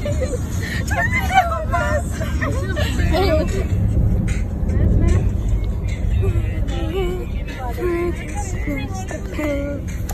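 Steady low rumble of a car's cabin on the move, heard from the back seat, with voices over it.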